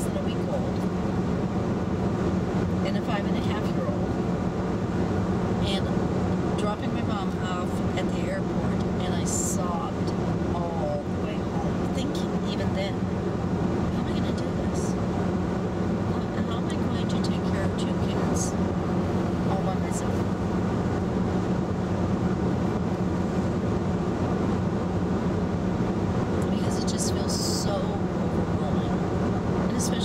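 Steady road, tyre and engine noise inside the cabin of a 2011 VW Tiguan cruising at highway speed, with a constant low hum.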